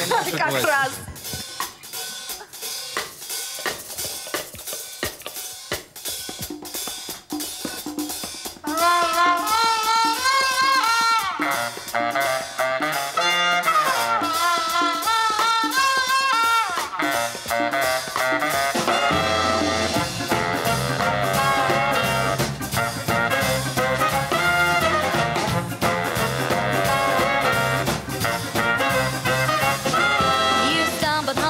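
A ska-jazz band playing live. The first seconds are drums and hand percussion, including congas; at about nine seconds the horn section, with trombone and baritone saxophone, comes in with the melody; and the bass fills in the low end from about twenty seconds.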